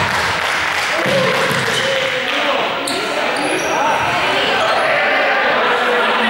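Several young people's voices calling out and chattering over one another in a large sports hall, with thumps of a rubber ball being thrown, bounced and kicked.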